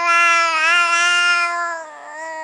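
A long, drawn-out vocal cry held at a nearly steady pitch with slight wobbles, easing off near the end.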